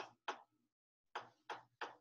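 A stylus or pen tapping and scraping on a tablet writing surface while handwriting, in about five short, separate taps.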